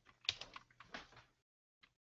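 Typing on a computer keyboard: a quick run of keystrokes for about the first second and a half, then one more key click near the end.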